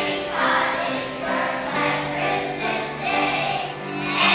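A choir of young children singing a Christmas song together in sustained phrases.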